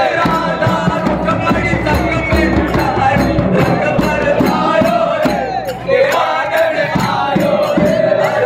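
A man singing a Holi devotional song into a microphone, backed by a large hand-held frame drum beaten in a steady rhythm, with a crowd singing and shouting along.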